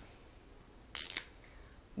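Dry-erase marker being handled at a whiteboard: one short click about a second in, against quiet room tone.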